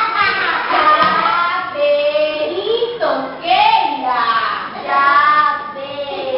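Young children singing a song together, joined by women's voices, in phrases with held notes.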